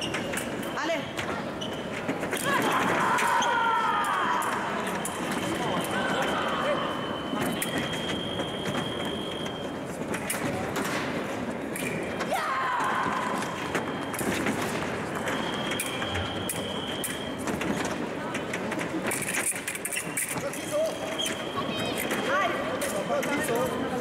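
Fencing footwork on the piste: sneaker squeaks, stamps and thuds, with sharp clicks, over the voices of a sports hall. Three times, a steady high electronic beep of a fencing scoring machine sounds for a second or two.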